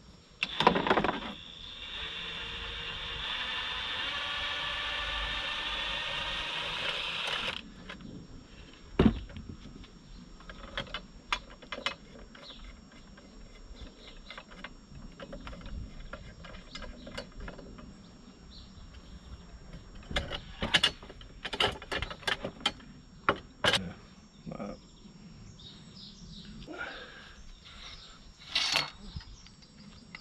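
Cordless impact driver running for about seven seconds as it undoes the damping rod bolt at the bottom of a motorcycle fork leg, a steady whine that cuts off suddenly. It is followed by scattered clicks and knocks as the fork parts are handled.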